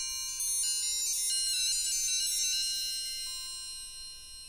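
Teenage Engineering OP-1 FM synth playing bright, bell-like notes at random from its Tombola sequencer as they bounce in the spinning tombola. Several notes overlap, and the sound thins out and fades over the last couple of seconds as the notes escape the tombola.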